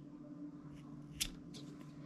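Scissors snipping through a strand of 550 paracord: a couple of faint clicks, then one sharp snip a little past a second in.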